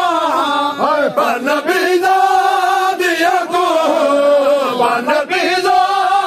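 A group of men chanting a Punjabi noha (Shia lament) in unison, several voices holding long, drawn-out wailing notes.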